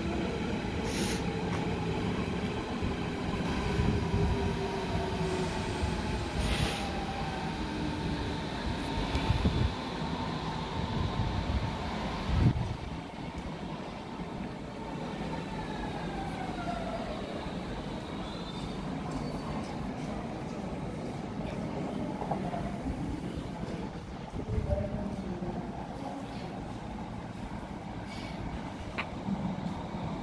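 Berlin U-Bahn IK-series trains moving through the station: the electric traction drive whines in several tones that glide up and down in pitch over a steady wheel-on-rail rumble, with a few heavy thumps.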